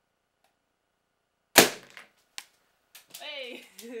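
A rubber balloon bursting with one loud pop about a second and a half in, struck by an airsoft pellet, followed by a small tick. A girl's voice hums near the end.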